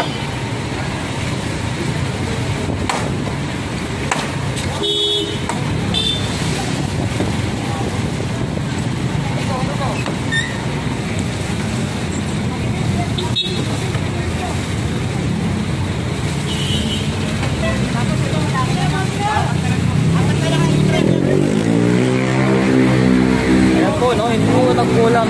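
Busy city street noise: traffic and people talking, with a few short horn toots, growing a little louder toward the end.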